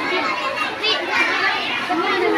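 Crowd of women and young children talking and calling out at once: a continuous babble of overlapping voices, with high children's voices rising above it.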